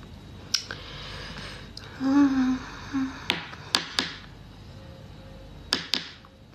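A woman hums a short, wavering 'mm' about two seconds in and briefly again near three seconds, amid a handful of sharp taps and clicks and soft breathy rustling.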